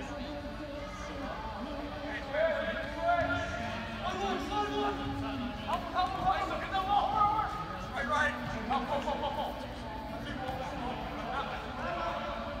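Several voices overlapping, indistinct, with some words drawn out. The voices grow louder about two seconds in and fall back near the end.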